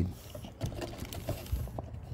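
Scattered light clicks and scraping of a portable band saw blade being worked by hand onto the rubber-tyred drive wheel and seated in the blade guides.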